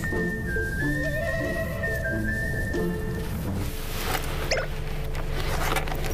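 Background music led by a high, whistle-like melody in long held notes over a repeating low accompaniment. The high melody drops out a little after three seconds in, and the accompaniment carries on.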